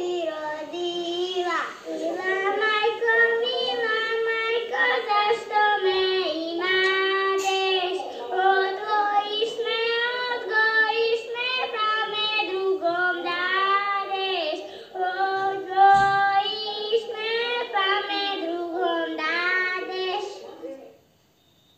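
Two young girls singing a traditional Croatian folk song in the throaty 'grleno' style, unaccompanied, their two voices held close together in parallel. Heard through a TV speaker.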